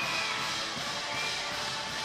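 Brass pep band playing in the arena, heard fairly quietly and even in level.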